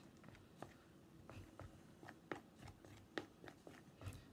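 Faint, irregular sticky clicks and smacks of a utensil stirring a thick, tacky mix of hair conditioner and cornstarch in a bowl.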